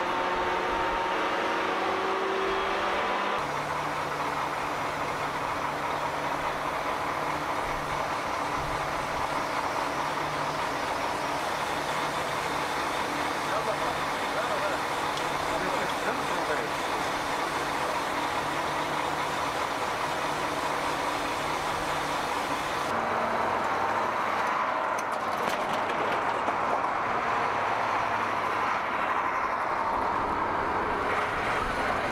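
Truck engine and fuel-dispensing pump running steadily while fuel is metered out of a military fuel tanker. The sound changes abruptly a few seconds in and again about three-quarters of the way through.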